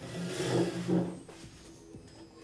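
Film soundtrack: a sustained low musical drone, with a low swelling rumble in two surges during the first second or so.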